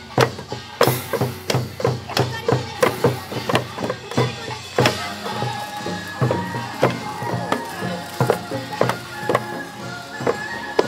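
Pungmul (Korean farmers' band) percussion: small brass kkwaenggwari gongs struck with mallets in a quick, steady rhythm, ringing over the low beats of janggu hourglass drums.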